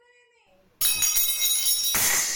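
A faint voice trails off, then about a second in comes a sudden loud crash with bright, high ringing.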